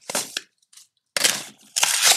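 Cardboard box and paper packaging being handled: a few brief scrapes and clicks, then, about a second in, a louder stretch of rustling and sliding as paper is pulled from the box.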